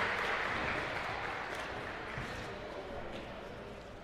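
Gymnasium crowd noise, a mix of scattered applause and voices in the stands, fading away steadily after a foul is called.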